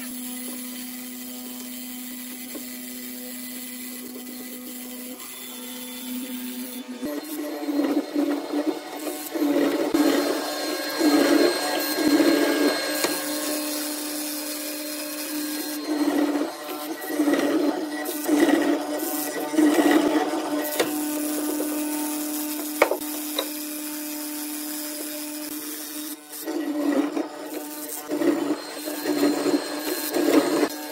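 Benchtop hollow-chisel mortiser's electric motor running steadily. From about seven seconds in, the square chisel and auger are plunged into the wood again and again, each plunge a short loud grinding burst over the motor hum.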